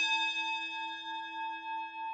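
A single struck bell ringing on and slowly fading, its tone pulsing gently as it dies away.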